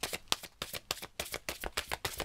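A deck of large oracle cards being shuffled by hand: a quick, even run of card slaps and flicks, about seven a second.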